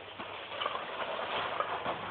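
Plastic bag rustling and crinkling as its top is tied in a knot, with small knocks from the cans inside.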